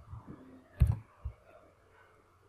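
A few separate clicks of a computer mouse and keyboard, the loudest a little under a second in.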